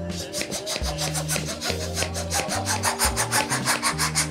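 Background music with steady held bass notes, over a quick, even run of rasping rubs, about six a second, that grows louder toward the end: a long latex modelling balloon rubbing as it is inflated and handled.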